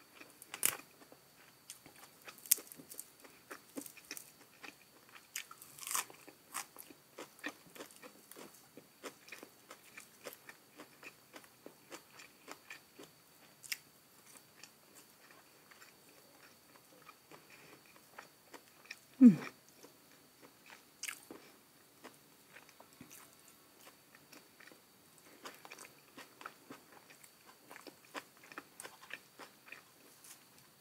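Close-miked eating sounds: crisp crunching bites and chewing of raw leafy greens and food, with many small sharp mouth clicks throughout. About two-thirds of the way in there is one loud, falling "mmm" of enjoyment.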